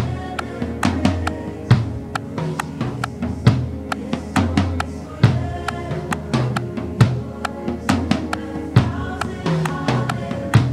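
Acoustic drum kit played with sticks, close-miked kick and snare keeping a steady beat with cymbal hits, mixed with a multitrack worship-band backing track carrying sustained instrument tones.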